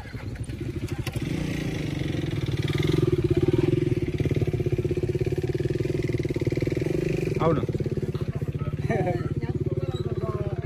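Motorcycle engine running at a steady idle, its firing pulses even and unbroken; it grows louder about a second in.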